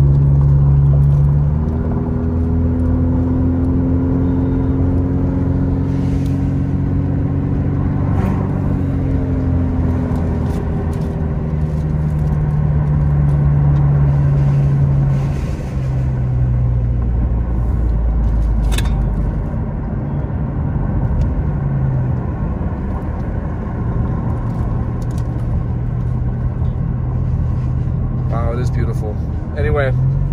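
A car's engine hum and road rumble heard from inside the cabin while driving, the hum drifting gently up and down in pitch with speed. A voice begins near the end.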